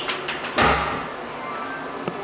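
A toilet stall door shuts with a single thud about half a second in, with background music running under it.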